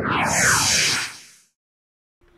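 A whoosh sound effect: a rush of noise that sweeps downward and fades away over about a second and a half.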